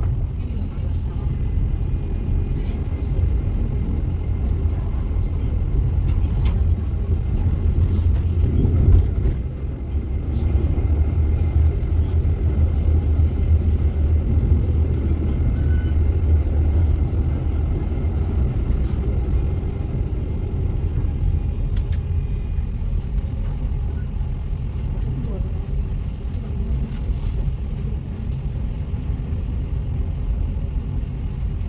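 Helsinki tram running along its tracks, heard from on board as a steady low rumble with scattered faint clicks and rattles.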